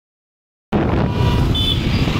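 City road traffic: vehicles running past close by, a steady loud rumble that starts suddenly about two-thirds of a second in after silence, with a brief high-pitched tone near the end.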